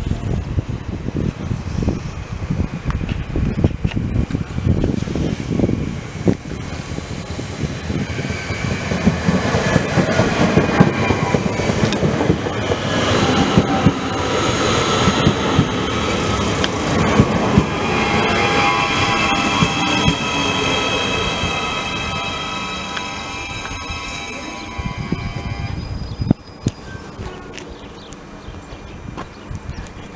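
Electric multiple unit passing through the station at speed: a rising rush of wheels on rail with high steady whining tones, loudest about halfway through, then fading. The sound cuts off suddenly near the end.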